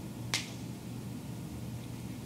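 A single sharp click about a third of a second in, over a steady low hum of room noise.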